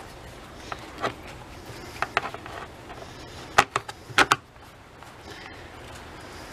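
Hands handling a Poulan chainsaw's chain, bar and plastic side cover: scattered light clicks and clacks of chain links and hard plastic, with the loudest few knocks a little past halfway.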